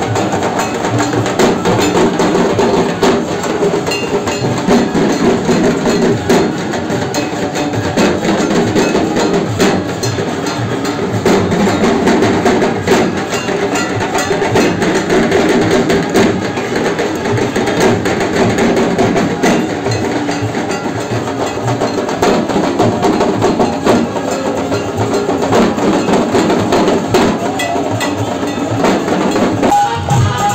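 A troupe of double-headed barrel drums beaten with sticks, playing a dense, continuous processional beat at a steady loudness.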